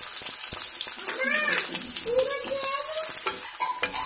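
Freshly added sliced onions sizzling in hot oil with whole spices, a steady high hiss, with a spatula starting to stir them through the pan near the end.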